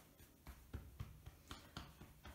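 Faint, irregular soft taps, about five in two seconds: children lightly drumming their fists on their own bodies.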